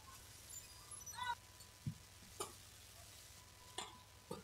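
Badminton rally: rackets striking the shuttlecock in short, sharp hits, three of them about a second apart, with a low thud from the players on court between them.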